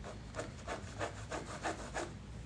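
Pen scratching on paper in a run of short, irregular strokes, faint against the room.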